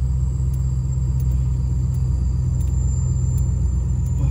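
Chevrolet Caprice Classic's V8 engine idling steadily, heard from inside the cabin as a low rumble, running after months in storage.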